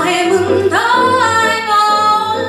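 A female solo voice sings a show tune with digital piano accompaniment; about two thirds of a second in she slides up into a long held high note.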